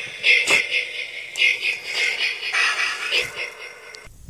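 Motion-activated Jason Voorhees doll playing its built-in horror sound clip through a small toy speaker. The sound is thin and tinny, mostly high-pitched, and stops shortly before the end.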